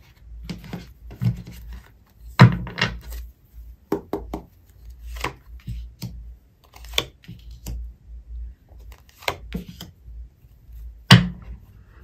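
Tarot cards handled on a tabletop: the deck split into piles and cards laid down one at a time, giving irregular taps and slaps of card on table, the loudest about two and a half seconds in and near the end.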